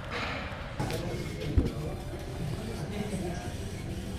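Background music mixed with indistinct voices, with a single sharp thump about a second and a half in.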